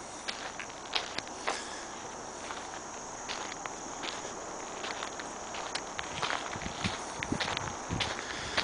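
Footsteps on a sandy dirt road, irregular light steps over a steady faint hiss of outdoor ambience, with a few heavier low thumps near the end.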